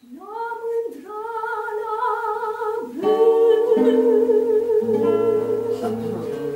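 Soprano singing a soft held note in her lower register that swoops up into it at the start and is sustained with a slight vibrato, while the classical guitar adds low closing notes from about halfway through: the final bars of the song, ringing out.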